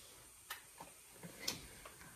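Faint clicks over quiet room tone: two sharper ones about a second apart, with a few softer ticks between them.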